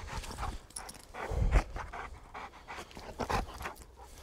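Large dog (Dogue de Bordeaux) panting in short, quick breaths, tired from rough play, with a low thump about one and a half seconds in.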